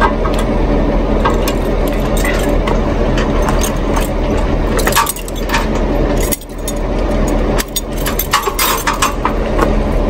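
Metal clinks and rattles of trailer safety chains and hitch hardware being unhooked, thickest in the second half, over the steady hum of the tow vehicle idling.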